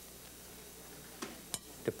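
Quiet room tone with a few light clicks in the second half from a spoon against a ceramic bowl as rice is spooned into it.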